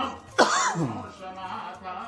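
People's voices, with one loud throat-clearing cough about half a second in, sharp at the start and falling away.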